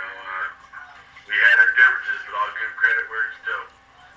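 Speech: a man talking, louder from about a second in, the words not made out.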